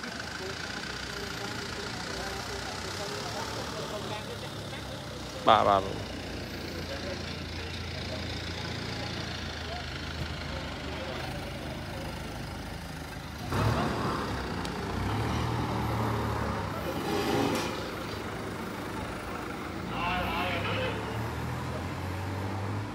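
Street ambience: motor vehicles running and passing, with a steady low engine hum and people talking in the background. About five seconds in comes one brief, loud, sharply falling tone. A louder stretch of engine noise begins past the middle.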